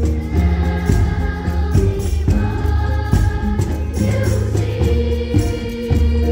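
Junior honor choir of young voices singing a song in held notes, over a low accompaniment that keeps a steady beat about twice a second.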